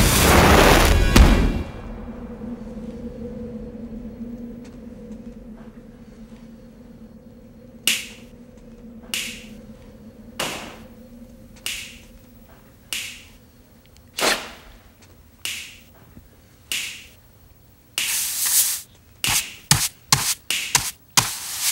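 A lighter flicked and flaring in a loud rushing burst, then water drips falling into a metal sink, sharp and evenly spaced about every 1.25 seconds like a slow beat. Near the end the hits come thicker, with a brushing sound.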